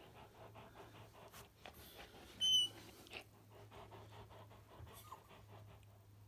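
Caucasian Shepherd dog panting quickly and steadily with a tennis ball in its mouth. The squeaker in the ball gives one short, high squeak about two and a half seconds in.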